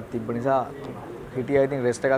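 A man speaking in short phrases, over a low steady hum.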